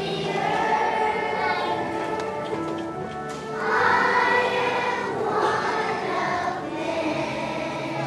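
A choir of young children singing together, their voices swelling louder about halfway through.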